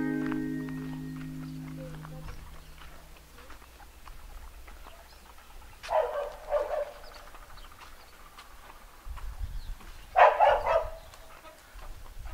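Acoustic guitar music ends on a chord that rings out and fades over the first two seconds. Then a dog barks: two short barks about six seconds in, and another burst of barking just after ten seconds.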